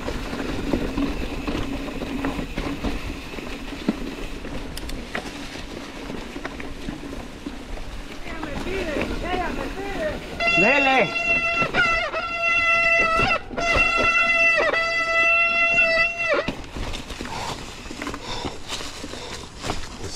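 Rear freehub of an Industry Nine wheel buzzing as the mountain bike coasts along a leaf-covered dirt trail, its pitch gliding up and down with speed, then a loud steady high buzz for about six seconds, broken once briefly where the rider pedals. Tyres rolling on dirt and leaves underneath.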